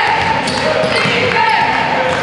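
A basketball being dribbled on a hardwood gym floor, with several short sneaker squeaks and voices calling out.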